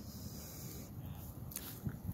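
Faint outdoor background noise, with a few soft clicks near the end.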